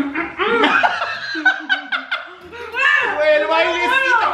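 A man and a woman laughing and making exaggerated, gliding vocal sounds of enjoyment while tasting a snack.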